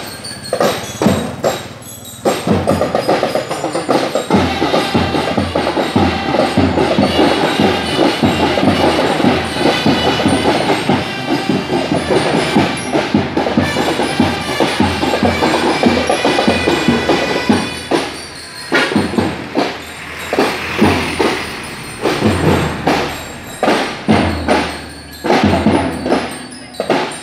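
Marching drum and lyre band playing: bell lyres carry a melody over a steady drum beat. About eighteen seconds in, the melody stops and the drums carry on alone with a spaced marching cadence.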